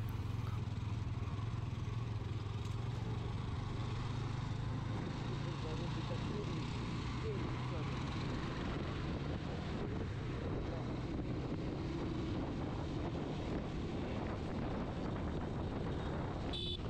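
Motorcycle engine running at low speed in slow traffic, heard from the rider's seat over steady road and wind noise. Its low hum is strongest in the first few seconds, then settles under the road noise.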